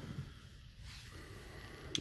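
Faint handling noise and low room hum as a knife is turned in the hand, with one short click just before the end.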